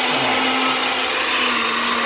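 Electric masala grinding machine running, its motor giving a steady whirring hum while it grinds spices to powder.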